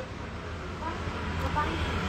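Low steady rumble of road traffic, growing slightly louder toward the end, with faint voices in the background.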